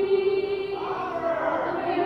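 Female voices singing together, holding a long note and then sliding through a bending phrase in the second half.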